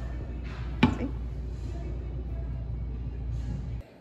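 Faint background music over a steady low hum, with one sharp click about a second in. The hum stops abruptly near the end.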